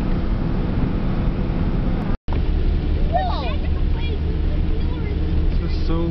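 Steady engine and road noise of a moving car heard inside its cabin, a continuous hum that cuts out for a moment about two seconds in.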